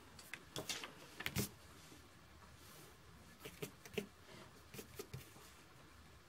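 Light taps and rustles of cardstock being handled on a tabletop as a die-cut paper basket is pressed onto a card front with foam adhesive dimensionals; the sharpest tap comes a little over a second in.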